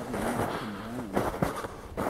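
Footsteps crunching in snow, with a couple of sharper steps about a second in, and a faint murmured voice in the first second.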